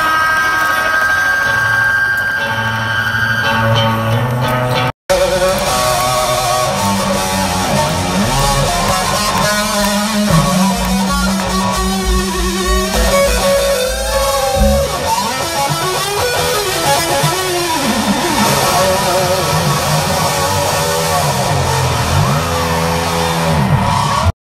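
Live rock band playing loud through a PA, with electric guitars over drums, heard from within the crowd. The sound drops out for an instant about five seconds in, where one clip cuts to the next.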